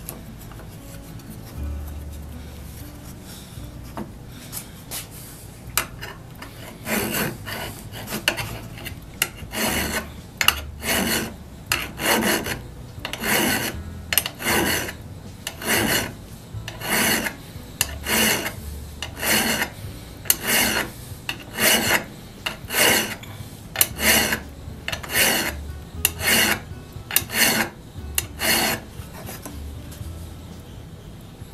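Hand file rasping across the steel radial cutting edge of an auger bit in short, even strokes, about one a second, starting some seconds in after a quieter stretch. The dull cutting edge is being filed sharp so that it runs right into the pilot thread.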